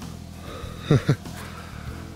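A man's brief wordless vocal sound about a second in, two quick falling strokes like a short grunt or snort, over a faint steady low hum.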